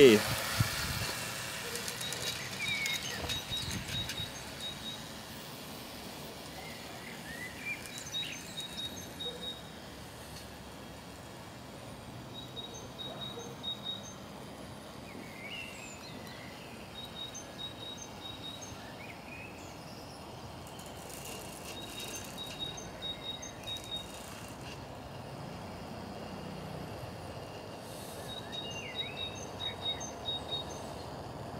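Garden ambience with birds chirping now and then and a high, rapid trill that comes and goes every few seconds, over a low steady background hum.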